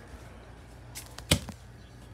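A single sharp knock, with a few lighter clicks just before and after it.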